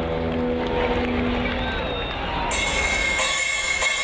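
Live rock band played through a festival PA, with a held note or chord fading out about two seconds in, then a brighter, noisier wash of stage and crowd sound carrying a steady high tone.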